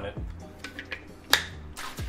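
Faint background music with one sharp tap a little after halfway through, and a few lighter ticks around it.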